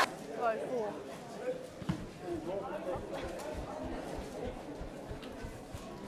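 Faint, distant voices of rugby league players calling out across the field, with a single thump about two seconds in.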